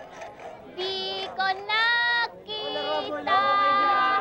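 A young girl singing a slow song in long held notes, about five sung phrases with short breaks between them.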